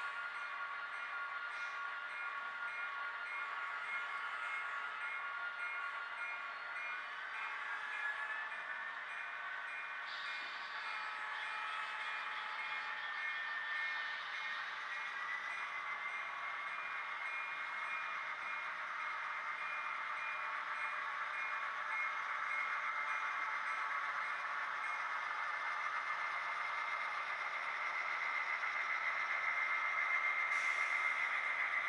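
HO-scale model diesel locomotives' sound-decoder engine sound running steadily, a mix of engine tones that rises in pitch twice, about eight and fifteen seconds in.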